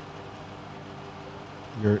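Pause in a man's speech: a faint steady background hum and hiss, with one spoken word near the end.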